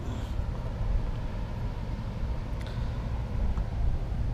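Steady low rumble of outdoor background noise, with a few faint clicks and no speech.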